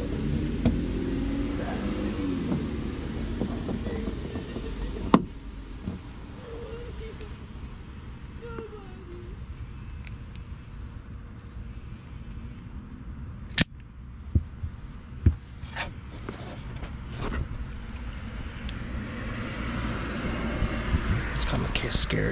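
A girl screaming and crying some way off, her voice wavering up and down. Three sharp clicks close by and rustling handling noise near the end.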